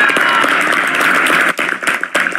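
Crowd applauding, a dense patter of many hands clapping that thins out about a second and a half in.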